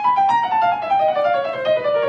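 Grand piano playing a slow descending chromatic run in thirds, two notes struck together at each step. The pitch falls steadily, several steps a second, as the exercise is played slowly for practice.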